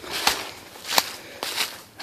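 Footsteps crunching through dry fallen leaves: three steps.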